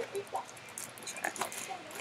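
Faint handling noise from a monogram-print cosmetic case being turned in the hands: soft rustles and small scattered clicks.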